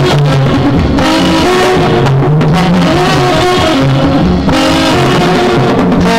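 Instrumental music from an old Telugu film song: guitar over a bass line that steps from note to note.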